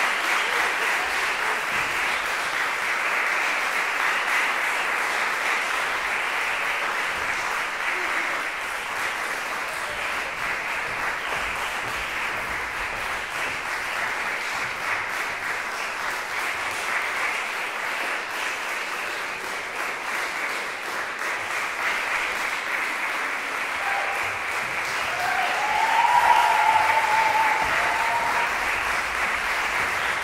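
Audience applauding steadily, easing slightly in the middle and swelling again near the end. A brief pitched call rises above the clapping a few seconds before the end.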